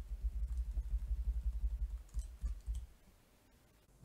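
Rapid computer keyboard keystrokes, dull low clicks in a quick run for about two seconds, then a few more, stopping about three seconds in.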